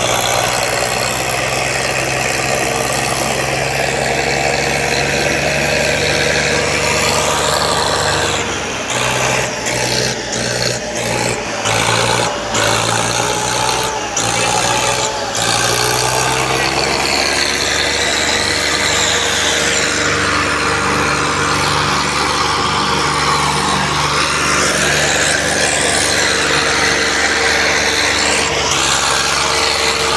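New Holland 3630 tractor's diesel engine running steadily under load, pulling a fully loaded trolley. A run of sharp knocks and rattles breaks in from about 8 to 15 seconds in.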